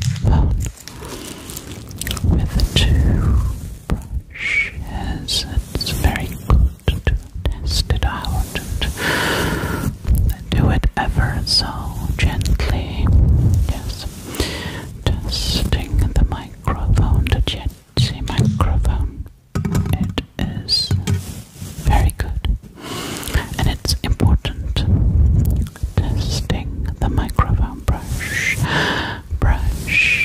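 Close, breathy whispering right into a microphone in short phrases, with low bumps and soft mouth clicks between them.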